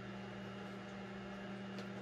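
Countertop microwave oven running, a steady low hum while it heats water.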